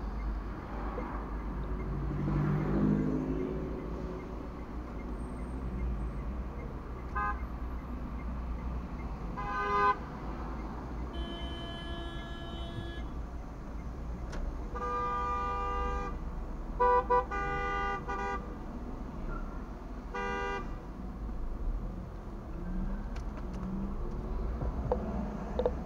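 Car horns honking repeatedly in traffic: two short beeps, then a longer honk at a different pitch lasting about two seconds, followed by a honk of about a second, a quick run of short beeps and one last beep. A low steady hum of engine and road noise runs under it, heard from inside a car.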